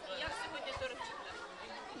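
Faint, indistinct background chatter of many voices in a room, with no single clear speaker.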